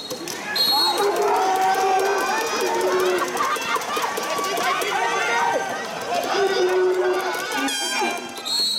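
Many voices shouting and cheering over one another, with held, chant-like calls. A short, shrill referee's whistle sounds about half a second in.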